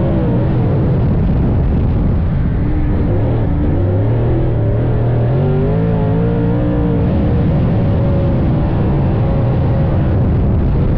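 Dirt late model race car's V8 engine running hard at racing speed, its revs falling and rising again as it goes around the track.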